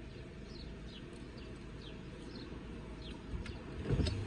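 Faint short chirps of a small bird, each falling in pitch, repeated every second or so, over the low steady hum of a car sitting idle.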